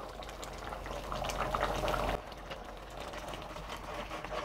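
Chayote and lentil sambar boiling in an aluminium pot, a steady bubbling with many small quick pops from bursting bubbles. It is louder for the first two seconds, then drops off suddenly.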